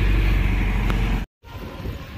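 Road traffic running close by, a loud low rumble. About a second and a quarter in it stops suddenly with a brief moment of silence, and quieter street sounds follow.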